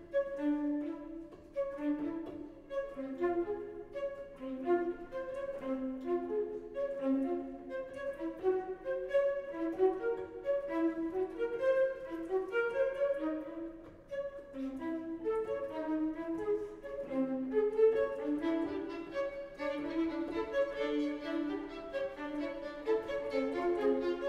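A flute, two violins and a cello playing together in a fast contemporary classical chamber piece, a busy run of quick, short notes layered over one another.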